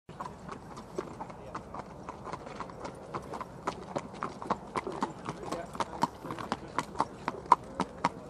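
Racehorses' shod hooves clip-clopping on a tarmac walkway as they are led at a walk, an irregular run of sharp clops, several a second.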